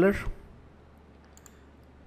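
The end of a spoken word, then quiet room tone with a low steady hum and a couple of faint computer mouse clicks about one and a half seconds in.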